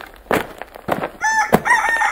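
A rooster clucking a few times, then crowing: one long call starting about a second in.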